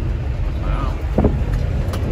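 Bulldozer's diesel engine running steadily under way, a continuous low rumble heard inside the cab.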